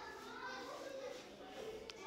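Faint background voices, children's among them, with a single sharp click near the end.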